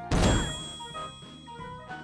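Cartoon magic-spell sound effect: a sudden bright clang with many chime-like tones that ring on and slowly fade, as a spell takes effect and turns the characters into owls.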